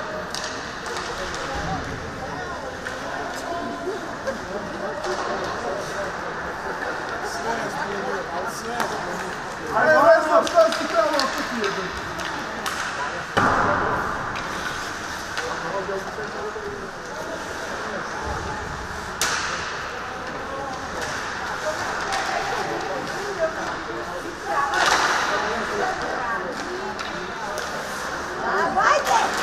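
Ice hockey play in a rink: sharp clacks of sticks on the puck and boards scattered throughout, with a strong crack about 13 seconds in. Voices of people at the rink shout over it, loudest about ten seconds in and again near the end.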